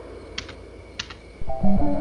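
Two sharp clicks from a computer keyboard, about half a second apart. About a second and a half in, video-game music starts with quick stepping notes and is louder than the clicks.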